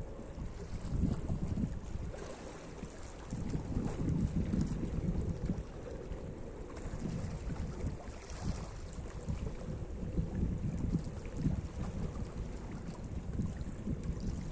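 Small sea waves lapping and washing over a rocky shoreline, with wind rumbling on the microphone in uneven gusts.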